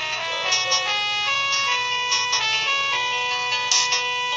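Karaoke backing track playing an instrumental break with no singing: sustained melody notes changing every half second or so, then one long held note, with a short hiss near the end.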